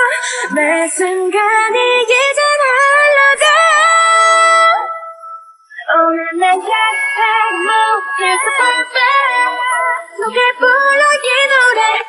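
A cappella female K-pop vocals with no instruments, a sung melody line that breaks off briefly about five seconds in and then resumes.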